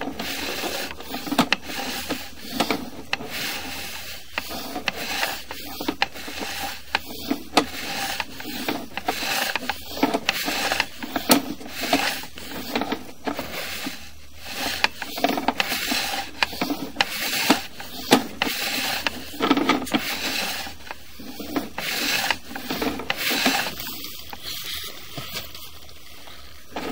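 Sewer inspection camera and its push cable being fed down a drain pipe: continual irregular rubbing and scraping with frequent sharp clicks and knocks as the camera head drags along the pipe walls and over joints.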